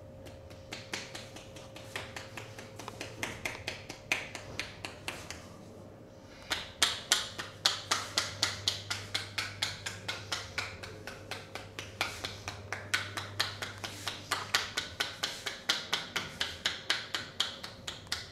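Rapid hand-chopping on a man's head with the palms pressed together, the striking fingers giving sharp slapping taps. The taps are light and spaced out at first, then become a loud, fast, even run of about four to five a second from about six seconds in.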